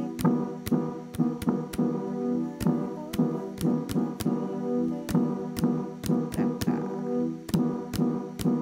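Synth chords played on a Deep House Synth keyboard preset, held notes with a brassy tone that change to a new chord a few times, over a steady sharp click about twice a second.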